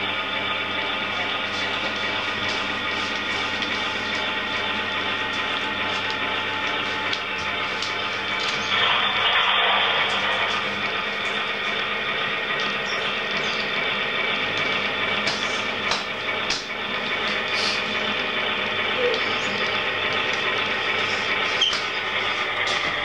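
HO-scale model freight train running on the layout: a steady whir from the running train, with scattered light clicks from wheels over the track. The sound swells louder for a second or two about nine seconds in.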